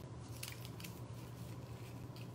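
Faint, scattered light clicks and rustles of folded paper slips being stirred by fingers in a small ceramic bowl.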